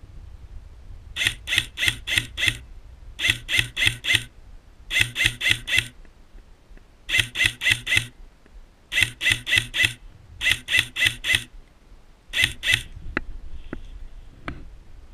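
Airsoft rifle fired in quick semi-automatic strings: seven strings of two to five shots at about five shots a second, each shot a sharp mechanical crack, with short pauses between strings and a few lighter clicks near the end.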